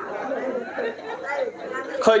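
Quieter speech: voices talking in low tones, softer than the main talk around them.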